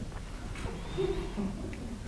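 Pause between sentences: steady low room tone of the hall, with one faint, short low tone about a second in.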